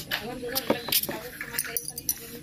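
Voices talking in the background, with a few short sharp clicks and clinks among them.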